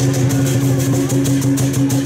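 Percussion accompanying a Chinese dragon dance, with rapid cymbal-like clashes several times a second over a steady low drone.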